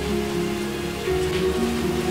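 A steady hiss like falling rain, with quiet background music of long held notes underneath.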